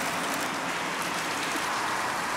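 Steady hiss of falling rain.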